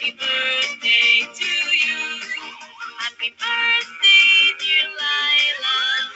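Recorded music with a synthetic-sounding singing voice.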